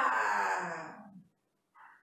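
A woman's drawn-out, breathy exclamation, her voice sliding down in pitch and fading out after about a second and a quarter.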